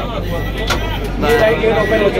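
Indistinct voices of people talking, starting a little over a second in, over a steady low hum inside a parked train coach. A single click comes under a second in, and a thin high tone sounds on and off.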